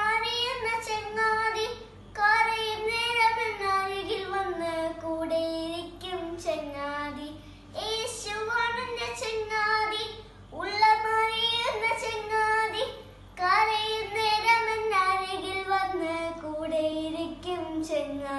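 A young girl singing solo, unaccompanied, in phrases of a few seconds with short breaths between them.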